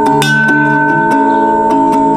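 Brass wall-mounted school bell struck once just after the start, its ring sustaining, over background music of plucked guitar-like notes.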